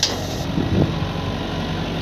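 Hitachi EX120-1 tracked excavator's diesel engine running steadily under working load as the boom swings and the bucket lifts mud, with a short click at the very start. The engine sounds strong, the sign of a machine still in good working shape.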